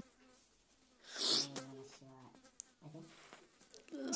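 Soft, quiet voices murmuring, with a short breathy hiss about a second in.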